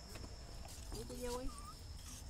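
A faint, short voice-like call about a second in, followed by a brief higher note, over quiet outdoor background with a steady thin high tone.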